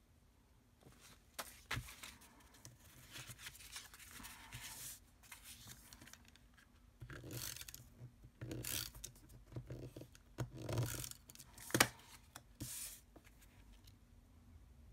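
Cardstock pieces handled and slid against each other and across a craft mat: intermittent paper rustling and sliding with light taps, and one sharper tap near the end.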